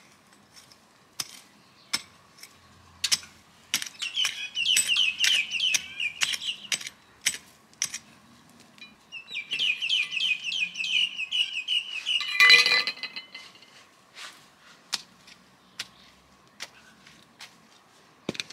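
A hand trowel digging into garden soil, with sharp clicks and scrapes as the blade strikes the earth. A bird chirps in two long runs of rapid notes, about four seconds in and again from about nine seconds, the loudest moment coming near their end.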